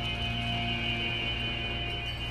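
Indie-folk band recording in a quiet instrumental stretch: a soft chord held steady, with no vocals.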